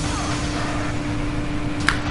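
Steady background hum at one low pitch with even hiss: the recording's room and equipment noise. A single sharp click comes just before the end.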